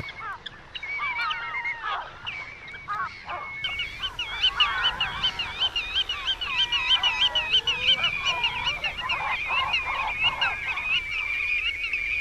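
Many wetland birds calling at once, with overlapping calls of different pitches. From about four seconds in, a fast run of repeated high calls runs over the top.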